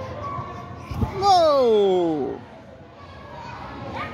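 A thump about a second in, then a young girl's long yell that glides steadily down in pitch for about a second as she leaps into a pit of foam blocks, over the din of a large trampoline hall.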